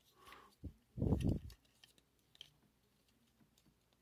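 Faint plastic clicks and handling noise from a Transformers Kingdom Rhinox action figure being twisted through its transformation, with a louder, low, muffled sound about a second in.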